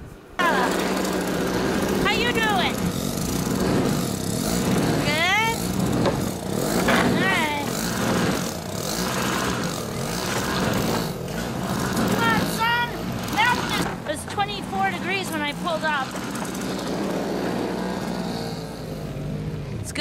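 Small-engine snowblower running steadily; its sound comes in abruptly just after the start.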